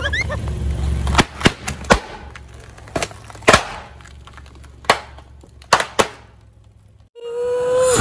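Long twisting balloons bursting one after another under a slowly rolling car tyre: a string of sharp pops spread over about five seconds, the loudest about three and a half seconds in, over the low rumble of the car creeping forward.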